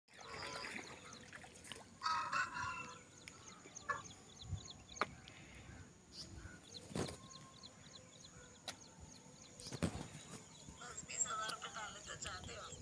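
Outdoor ambience of birds chirping in short repeated calls and a chicken calling, with faint voices. A few sharp clicks break in about 5, 7 and 10 seconds in.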